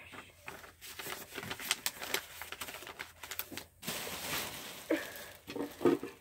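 Objects being handled and thrown into a trash can: scattered light clicks and knocks with crinkling rustles, and a longer rustle about four seconds in.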